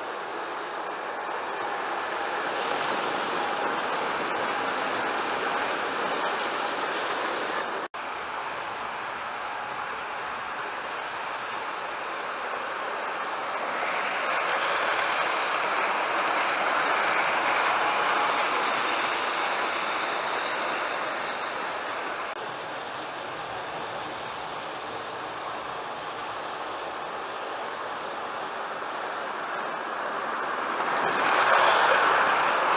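OO gauge model trains running on sectional track: the steady whirr of the locomotives' small electric motors and wheels on the rails. It swells louder for several seconds around the middle as a train passes close by.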